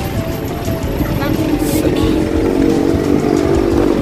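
City bus engine idling at the stop with its door open, a steady low rumble with street traffic around it, and music playing over it.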